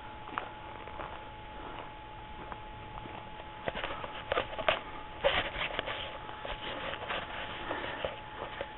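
Footsteps on a dry, leaf-littered dirt track: irregular crackly steps that begin about halfway through, over a faint steady hum.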